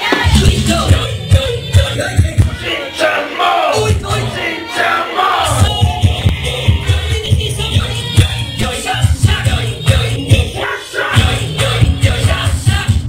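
Loud club music on a sound system, with a heavy bass beat that drops out briefly a few times and a vocal over it, and crowd voices mixed in.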